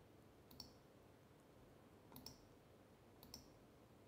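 Three faint computer mouse clicks, spaced a second or more apart, made while adjusting a setting in desktop software.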